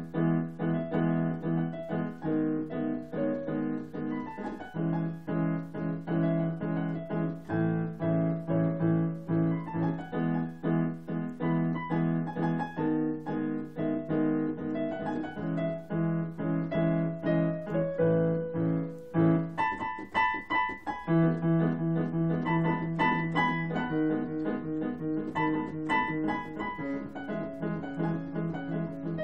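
Piano played solo: repeated chords over a low held bass note in a steady rhythm. About two-thirds of the way through, the bass drops out for a couple of seconds while higher notes carry on.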